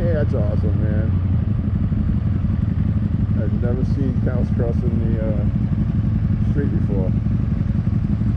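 Motorcycle and trike engines idling in a stopped group ride, a loud, steady low drone. Indistinct voices come and go over it.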